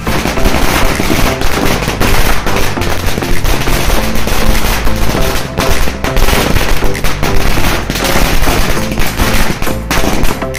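A string of firecrackers going off in a rapid, continuous chain of sharp cracks, over loud background music with a steady bass.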